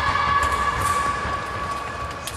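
A fencing scoring machine's buzzer sounding one long steady tone that fades out near the end.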